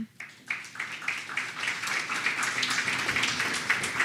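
Audience applauding: many people clapping. It starts just after the beginning and quickly builds to steady clapping.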